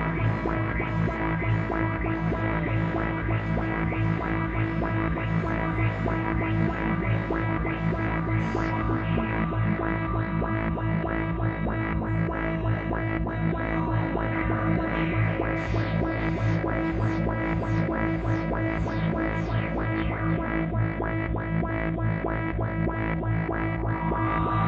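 ARP 2600 clone (TTSH) modular synthesizer playing a dark electronic patch: a steady low drone under a fast, repeating pulse. About two-thirds through, a run of short falling sweeps comes in at the top.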